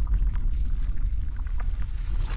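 Cinematic logo-intro sound effect: a deep, steady low rumble with scattered short crackling hits on top.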